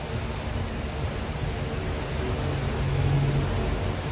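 Steady low rumble of room noise in a crowded pool hall, with no ball strike.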